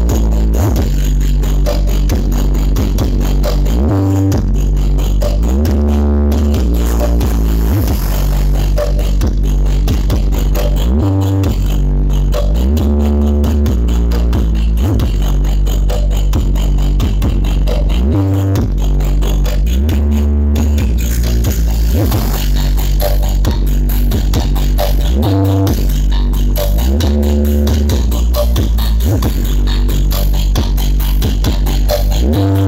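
Loud electronic dance music with a heavy bass beat, played through a parade sound system.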